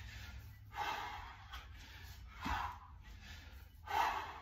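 Heavy breathing of a man working through continuous kettlebell half snatches: a sharp, forceful exhale with each rep, three of them about a second and a half apart. A dull low thud comes with the second breath.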